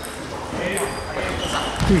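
Table tennis balls clicking off tables and bats, a few sharp ticks over a background murmur of voices.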